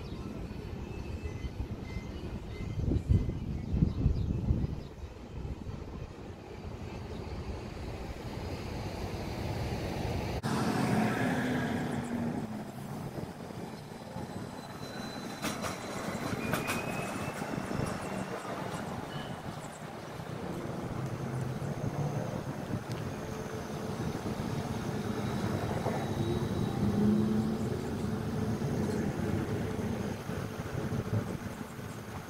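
City street ambience with vehicle traffic going by. The sound changes abruptly about ten seconds in.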